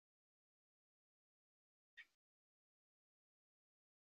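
Near silence: the teacher's microphone is muted on the video call, broken only by one faint, very short blip about two seconds in.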